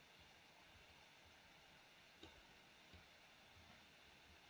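Near silence: a faint steady hiss, with a soft click a little over two seconds in and two fainter clicks after it, typical of a computer mouse being clicked while values are adjusted.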